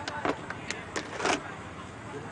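About six sharp knocks or bangs in quick, uneven succession over the first second and a half, the last one the longest, over a low background crowd murmur.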